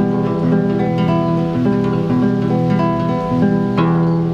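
Nylon-string classical guitar played fingerstyle over a held E minor chord: thumb and ring finger pluck in turn on strings a string apart, in a steady run of single ringing notes at about three a second.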